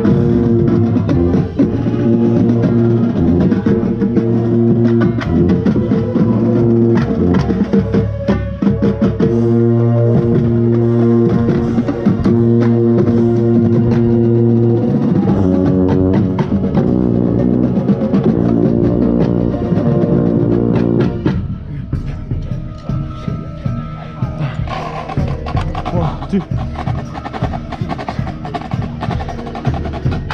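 Drum corps brass and drumline playing together, with the contrabass bugle right at the microphone giving loud, held low notes. About two-thirds of the way through the horns stop suddenly, leaving quieter percussion ticks and clicks.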